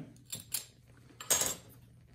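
A lab gas burner being lit: two light clicks, then a short hissing burst a little over a second in.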